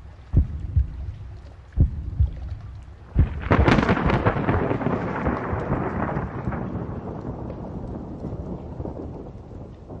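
Pairs of low thumps like a heartbeat, then about three and a half seconds in a loud crash of thunder that rumbles and dies away slowly.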